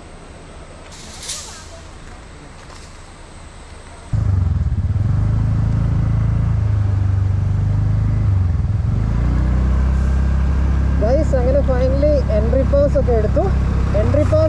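Quiet open-air sound with a brief rustle about a second in, then a sudden jump to the loud, steady low rumble of a scooter riding along a road, wind buffeting the camera microphone. From about eleven seconds a wavering voice rises over the ride noise.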